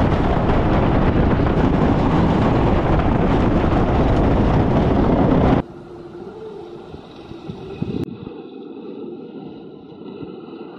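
Roar of a wooden roller coaster train running on its track, heard from a rider's seat with wind rushing over the microphone; it cuts off abruptly a little over halfway through. Then a quieter, more distant rumble and clatter of the coaster, with a knock near the end.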